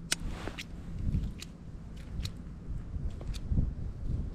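Wind rumbling on the microphone, with about five sharp, scattered clicks.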